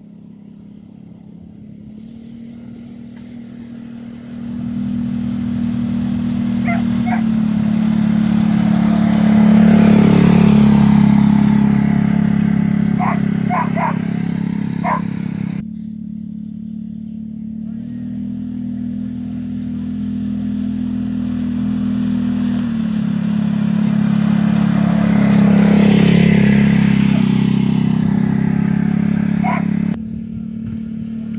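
Utility vehicle (side-by-side) engine running at low speed, growing louder as it approaches to a peak, then, after an abrupt break, swelling to a peak again. Tyre noise rises over the sand at each loudest point, and a few short high calls are heard over it, first twice and then in a quick group of three or four.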